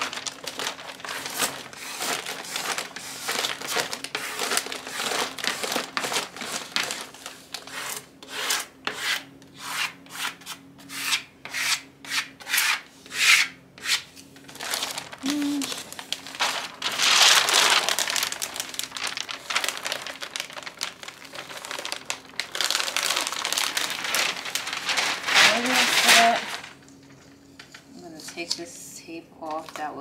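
Plastic card rubbing and scraping across vinyl peel-and-stick wallpaper to smooth it onto a wooden panel and press out air bubbles, in many quick strokes, with the paper liner crinkling as it is peeled back. There are longer stretches of rustling and scraping about halfway through and again near the end.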